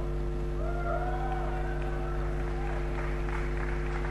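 A steady low hum from the stage sound system during a pause before a live song, with faint audience noise and a faint drawn-out call from the crowd between about half a second and two and a half seconds in.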